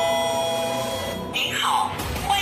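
Electronic two-tone chime like a doorbell ding-dong, standing in for a motion sensor's alert; its lower second tone rings on and fades out just over a second in, over background music. A short noisy swish near the end.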